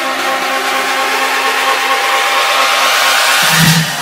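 Electronic dance music build-up with the bass cut out: a hissy noise sweep rises in level and brightness over held synth chords, and a short low note sounds near the end just before the beat and bass drop back in.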